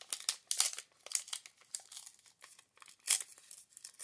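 Plastic-foil wrapper of a Magic: The Gathering Unhinged booster pack crinkling and tearing as it is opened by hand, in irregular sharp crackles, loudest about half a second in and again about three seconds in.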